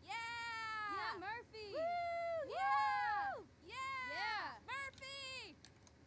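Two women's yelled call-outs, recorded in post as group (walla) lines for a crowd scene: a string of high, drawn-out cheering yells, each about half a second to a second long, with short breaks between them.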